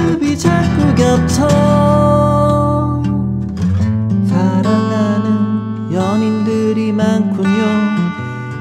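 Gibson J-45 acoustic guitar being strummed through a run of chords, with a man's voice singing long held notes over it.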